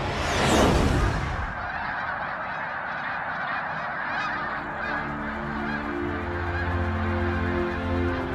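A huge flock of snow geese calling all at once, a dense, unbroken honking clamour. A loud rushing burst comes in the first second and a half.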